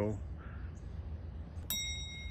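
A single bright bell-like ding, struck sharply near the end and ringing on as several clear high tones. It is a chime sound effect that comes in with a subscribe-button graphic. Under it, before the ding, is a faint low steady hum.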